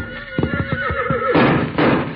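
A horse whinnying: a quavering, pulsing call that falls in pitch, then two short breathy blasts in the second half.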